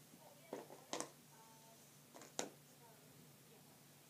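A few short, sharp taps in a quiet small room: one about half a second in, another about a second in, then two close together a little over two seconds in, with a faint low voice between the first taps.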